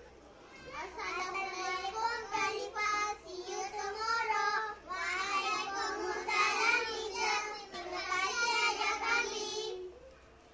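A group of young children chanting a choral-speaking piece in unison, starting about a second in and stopping just before the end.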